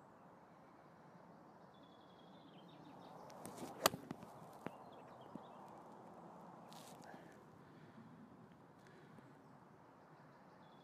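A six iron striking a golf ball in a full swing: one sharp click about four seconds in.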